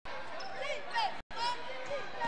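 Basketball game sounds on a hardwood court: sneakers squeaking in short rising and falling chirps as players run, with the arena's voices behind.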